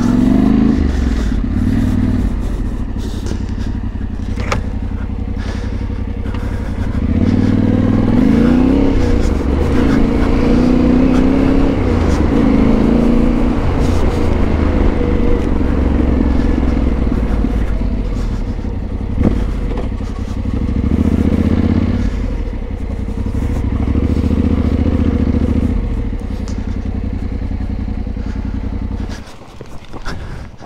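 Yamaha Ténéré 700's parallel-twin engine running as the motorcycle is ridden on a rough sandy dirt road, its pitch rising and falling with throttle and gear changes. The engine sound drops away suddenly near the end.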